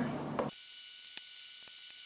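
Steady high hiss of recording static with a few faint steady tones, broken by two faint clicks about a second in and near the end.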